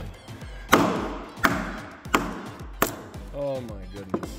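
A small sledgehammer striking a wooden peg to drive it into a one-inch drilled hole in a timber-frame joint: four blows, one about every 0.7 s, each with a brief ring. The peg splits instead of seating.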